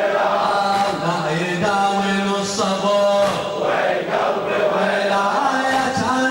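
Arabic Shia mourning lament (latmiya) chanted by male voices, with long held notes that glide slowly from one pitch to the next.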